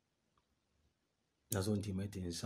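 A pause in a man's speech: near silence with one faint click, then his voice resumes about a second and a half in.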